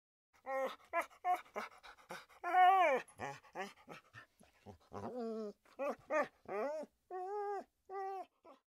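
A dog whining in a string of short calls, each rising and then falling in pitch, the longest and loudest about two and a half seconds in.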